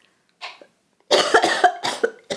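A woman's put-on coughing fit, a run of harsh coughs starting about a second in after a short breath, acted out to sound sick.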